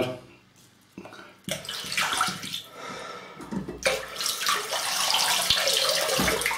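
Water running from a tap into a sink, starting about a second and a half in and settling into a steady rush over the second half.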